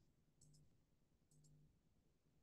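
Near silence broken by two faint clicks about a second apart, each a quick double tick like a computer mouse button pressed and released, as the presentation slide is advanced.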